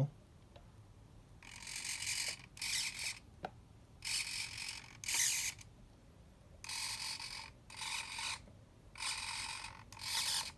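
The azipod units of a radio-controlled model tug whirring in short gear-driven bursts as they are run from the transmitter. There are about seven bursts of under a second each, several in close pairs, with quiet gaps between them.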